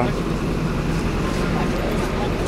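Steady low street rumble with faint voices of people nearby.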